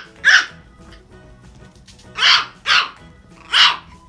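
Small puppy barking four times in short, high barks: one right at the start, then three more close together in the second half.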